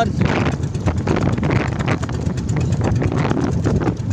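Motorized bangka running steadily under way at sea: a continuous low engine drone mixed with wind on the microphone and water rushing past the hull.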